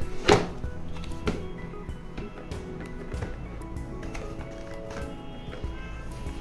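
Background music, with a sharp cardboard snap about a third of a second in as the lid flap of a cardboard box is pulled open, then a couple of lighter handling taps.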